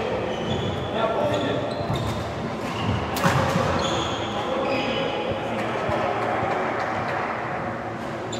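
Badminton hall sounds: court shoes squeaking in short, scattered chirps on the floor, a sharp knock about three seconds in, and voices murmuring in the background.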